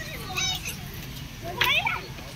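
Children's voices as children play: two short, high calls, the second and louder one about a second and a half in, over a steady low background hum.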